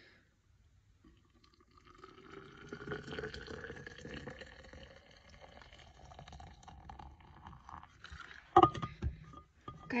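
Just-boiled water poured from an electric kettle into a tall stainless-steel insulated tumbler, the pitch of the filling rising slowly as the cup fills. A couple of sharp knocks near the end are the loudest sounds.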